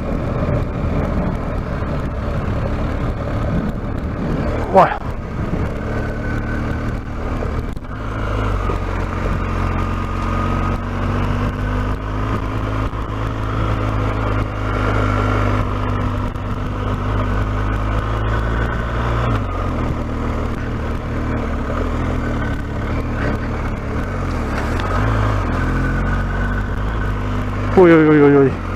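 Adventure motorcycle engine pulling steadily at low speed up a loose dirt track, its note rising and falling slightly, with one sharp knock about five seconds in.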